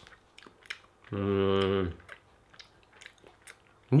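A man chewing a mouthful of rice with caramel syrup, with soft clicks of chewing throughout. About a second in he gives one steady hummed 'mmm', just under a second long, as he tastes it.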